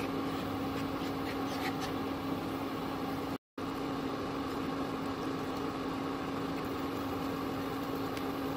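A steady electrical hum with one constant low tone, under faint scraping of a wooden spatula stirring thick white sauce in a nonstick pan. The sound cuts out briefly about three and a half seconds in.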